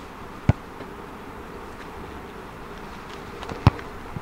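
Boot striking a rugby ball in a kick at goal: one sharp thud near the end, the loudest sound, with a lighter knock about half a second in, over a steady background hiss.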